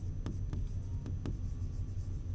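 Stylus writing by hand on an interactive display screen: a series of short taps and scratches as the letters are formed, over a steady low hum.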